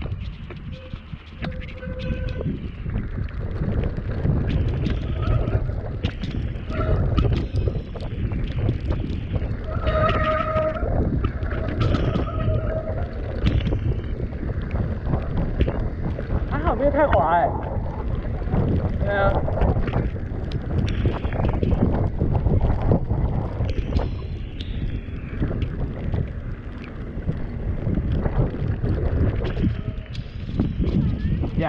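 Mountain bike running down a dirt trail: wind rumbling on the camera's microphone over the rattle of the bike and the rolling of the tyres, with a few short squealing tones about a third of the way in and a wavering one a little past halfway.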